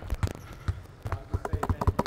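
A series of light knocks and taps, coming faster and closer together near the end.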